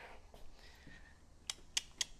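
Two short, sharp clicks about a quarter of a second apart, over faint room tone.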